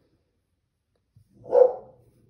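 A single short, loud bark about one and a half seconds in.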